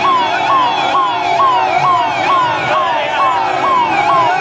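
Electronic vehicle sirens sounding loudly in a fast, repeating sweep, each cycle climbing sharply and then falling, about two cycles a second, with more than one siren overlapping.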